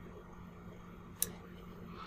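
A single computer mouse click about a second in, over a faint steady hum.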